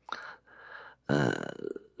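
A man's hesitant non-word vocal sounds: a short breathy sound, then a louder drawn-out, low gravelly filler sound about a second in, like a stalled 'eee' while searching for words.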